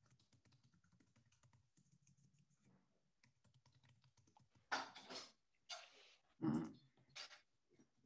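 Faint typing and clicking on a computer keyboard and mouse. In the second half come a few louder short noises, each lasting up to about half a second.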